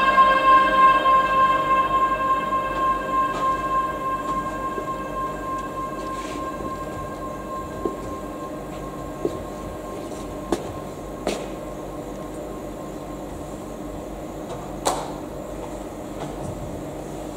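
Electronic drone of several held steady tones, the close of a glitch audiovisual piece, fading out over the first six seconds or so. Then a handful of scattered sharp clicks, the loudest near the end.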